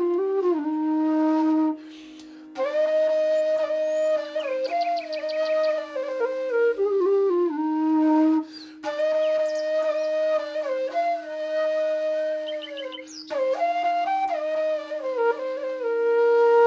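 Background music: a flute playing a slow melody over a steady low drone note, the melody pausing briefly a few times.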